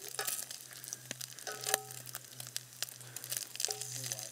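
Bacon sizzling in hot grease in a large cast iron skillet over a campfire, with a steady crackle and frequent small sharp pops.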